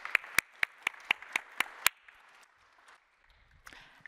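Audience applause, with sharp single claps standing out about four times a second. It dies away about two seconds in.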